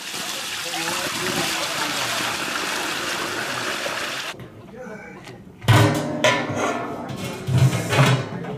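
Cloudy kudzu-starch water pouring out of a tipped stainless steel stockpot and splashing onto the ground in a steady stream, cutting off about four seconds in.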